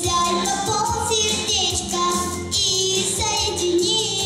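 A young girl singing into a handheld microphone over backing music, holding notes with a wavering vibrato.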